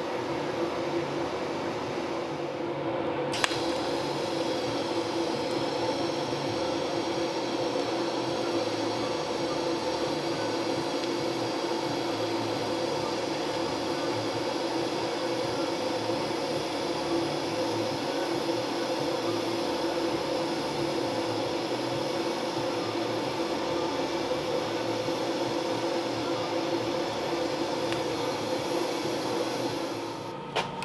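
DC TIG welder arc striking with a sharp click about three and a half seconds in, then a steady hiss as the torch welds a steel pedal pad onto a gas-pedal arm, over a constant machine hum.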